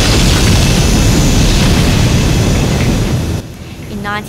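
Jet engine of a supersonic land speed record car at full thrust: a loud, steady rushing noise, heaviest in the low end, that drops away about three and a half seconds in.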